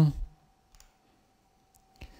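Two faint, short clicks about a second apart over a faint steady hum, the second coming just as the next line of the lecture slide is brought up.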